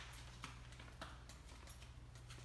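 Near silence: room tone with a steady low hum and a few faint soft clicks.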